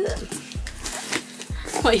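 Background music with a steady beat, over the scraping rasp of cardboard sliding against cardboard as an inner box is pulled out of its outer shipping box.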